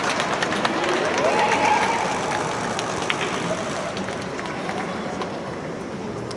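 Distant shouting voices carrying across an open football pitch over a steady wash of outdoor stadium noise, with a few sharp claps or knocks. Louder in the first two seconds, easing off after.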